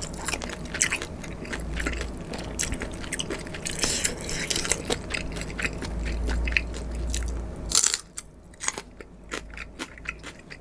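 Crunching bites and chewing of a raw green chili pepper close to the microphone, a dense run of crisp crackles. It turns clearly quieter about eight seconds in.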